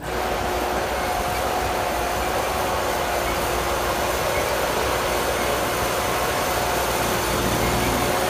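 Large wheeled farm tractor's engine running steadily: an even rushing noise with a faint steady whine over it.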